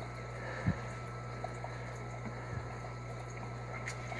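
Aquarium gravel vacuum siphoning water out of the tank through its tube, under a steady low hum, with two soft knocks about a second apart early and midway as the tube works the gravel.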